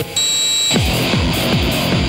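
Live rock band music: the guitar strumming breaks off, a high steady tone sounds for about half a second, then a heavy, noisy electronic-tinged section starts with a driving beat of deep falling bass tones.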